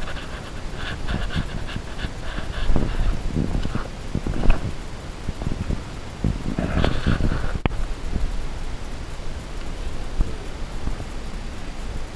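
Heavy panting breaths of a hiker on the move, over footfalls and the rubbing and knocking of a handheld camera being carried along the trail.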